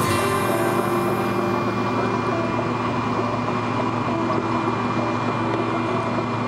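Steady engine drone inside a Boeing 777-300's cabin as the airliner taxis with its engines at idle, with a steady high whine running through it. The music dies away at the start.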